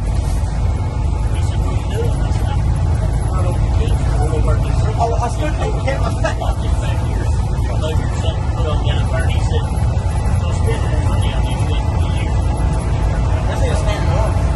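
Loud, steady engine and road rumble heard inside a moving shuttle bus, with indistinct voices faintly over it.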